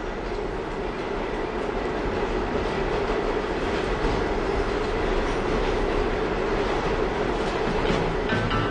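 Metro train running, heard from inside the carriage: a steady rumble and rush of wheels on rails.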